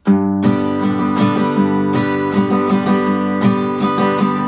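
Steel-string acoustic guitar strummed in a country style: a bass note on each beat followed by lighter strums on the upper strings, in a steady rhythm of about two main strokes a second. The chord rings between strokes.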